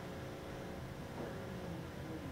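Faint steady room tone with a low hum.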